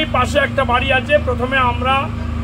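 A man speaking over the steady low drone of a running engine.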